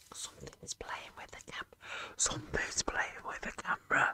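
A person whispering: a run of short whispered phrases that starts suddenly and goes on with brief gaps.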